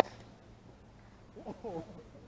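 A single sharp pop of a baseball caught in a leather fielder's glove. About a second and a half later, voices call out briefly.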